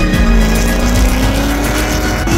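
Drift car engine held at high revs, its pitch climbing slowly, with tyre squeal as the car slides sideways, under background music.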